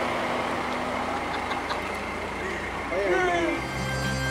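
A car running close by amid street noise and people's voices, with a louder voice calling out about three seconds in. Background music fades in just before the end.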